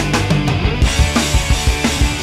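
Rock music with a fast, steady drum beat.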